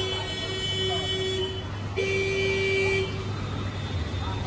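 A vehicle horn held in long steady blasts over the low rumble of road traffic, breaking off briefly about halfway through and stopping about three seconds in.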